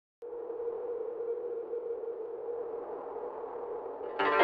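A steady electronic drone: one held tone with a soft hiss around it, starting just after the beginning and staying even throughout.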